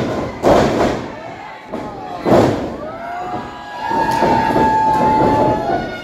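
Two heavy thuds from the wrestling ring, about two seconds apart, as bodies hit the mat, with the crowd shouting. In the second half, one voice holds a long yell over the crowd.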